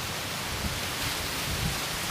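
Steady hiss of background noise with no speech, even in level throughout.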